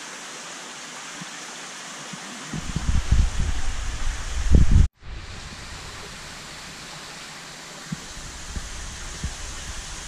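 Steady rushing hiss of water in a large outdoor aquarium, with low rumbling knocks for a couple of seconds before an abrupt cut about five seconds in.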